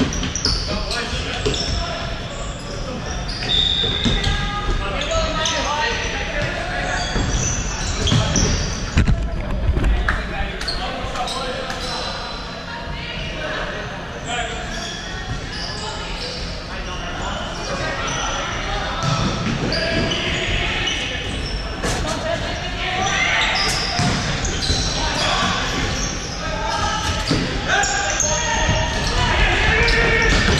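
Futsal match play on a wooden court: the ball being kicked and bouncing off the floor in short knocks, with players calling out. It all echoes through a large sports hall.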